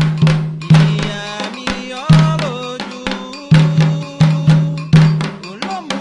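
Candomblé sacred music for Oxum: atabaque hand drums and an agogô bell playing a fast, uneven rhythm of strokes, with a singing voice in places.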